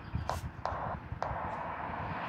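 Three sharp clicks of keys being pressed on the hand microphone keypad of a Retevis RT95 mobile radio, over a steady hiss.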